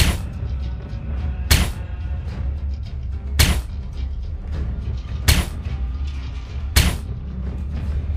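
Five recorded gunshot sound effects, each a sharp crack about one and a half to two seconds apart, over a low droning music track.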